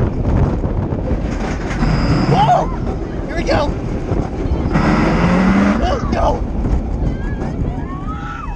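Pantheon launched roller coaster heard from a seat on the moving train: constant wind rush over the microphone and the rumble of the train on the track. Riders yell several times, the longest shout about five seconds in.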